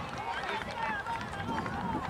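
Indistinct, overlapping voices of players and spectators calling out across the field.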